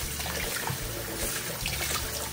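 Kitchen faucet running steadily onto lettuce leaves in a plastic bowl, water splashing as the salad greens are rinsed.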